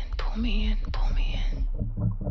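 A breathy, whispered voice phrase repeated three times, each repeat set off by a sharp click. It stops about three-quarters of the way through, leaving a low pulsing rumble.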